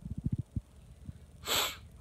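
A few soft, low thumps in the first half second, then one short, sharp breath through the nose about a second and a half in.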